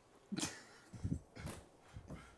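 A person gasping: three short, breathy gasps.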